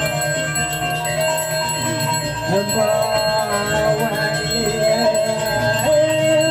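A small ritual bell ringing continuously over slow devotional singing with a drawn-out, wavering melody, typical of the priest's hand bell (genta) and chant at a Balinese temple ceremony.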